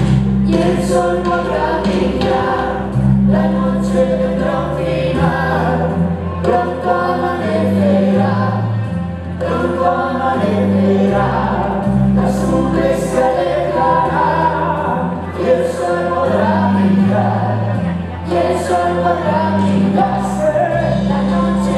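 Live stage-musical number: a choir singing over sustained bass notes that change pitch every second or two.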